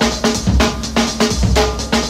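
Loud breakbeat music with a driving kick and snare drum pattern.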